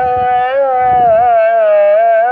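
Muezzin's call to prayer (ezan) sung through minaret loudspeakers: one long held note, ornamented and wavering in pitch.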